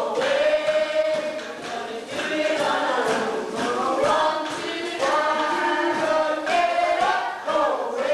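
Stage musical cast singing together in chorus, many voices on one melodic line with held notes.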